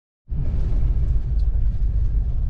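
Low, steady rumble of a truck driving slowly along a dirt track, heard from inside the cab. It starts suddenly about a quarter second in.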